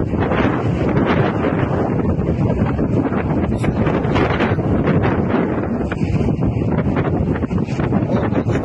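Wind blowing across a phone's microphone: a steady rush of noise, heaviest in the low end.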